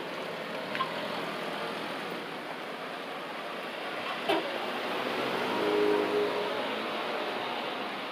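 A car driving past on a town street over steady traffic noise, its engine hum swelling to its loudest about six seconds in. A brief knock sounds a little past four seconds.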